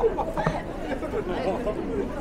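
Chatter of several people talking at once, with overlapping voices.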